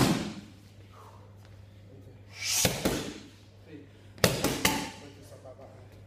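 Boxing gloves striking focus mitts in a large echoing room. One hit lands right at the start, two come close together near the middle, and a quick three-punch combination follows about four seconds in.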